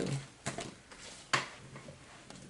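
Tarot cards handled on a cloth-covered table: two short clicks about a second apart as a deck is put down and another picked up, over faint room tone.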